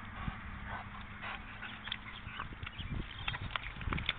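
Wet mud squelching and slapping in irregular splats as a Staffordshire Bull Terrier wallows and rolls through it.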